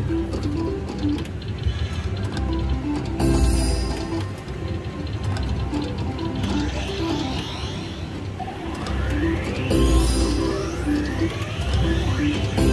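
Catch the Big One 2 slot machine playing its electronic reel-spin sounds, a melody of short stepped notes repeating spin after spin. About two thirds of the way through come rising sweeping tones, and short noisy bursts come twice, a few seconds in and near the end.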